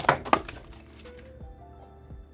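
Paper tracker sheets and loose coins handled on a tabletop: two sharp clatters near the start, then faint background music.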